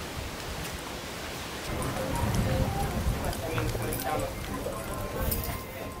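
Indistinct voices of several people talking in the background, over a steady hiss.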